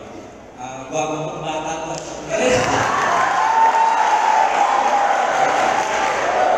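A man speaking over a microphone, then from about two seconds in a large audience of students breaks into loud cheering that carries on.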